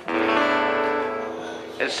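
Acoustic guitar chord strummed once and left to ring, slowly fading over about a second and a half.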